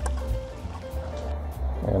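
Background music, a few soft sustained notes, over a low steady rumble.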